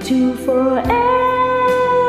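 Karaoke singing over a ballad backing track: a couple of short sung notes, then one long note held steadily from about a second in.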